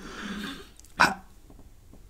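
A man's soft breathy exhale, then a single short, clipped voiced sound about a second in, the hesitant start of a word ("I").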